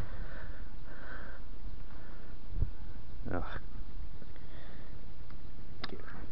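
Steady low rumble of wind buffeting the microphone, with sniffing and breathing close to the microphone and a short vocal sound a little over three seconds in.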